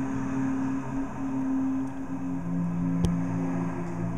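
Ambient live-looped vocal drones: several voices hold long, steady notes in layers, with a lower note entering about halfway through. A single sharp click sounds about three seconds in.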